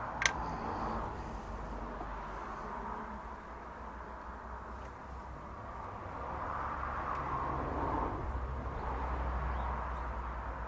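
Brake fluid being poured from a plastic bottle into a car's master cylinder reservoir, a soft steady pour in the second half, after a single sharp click near the start.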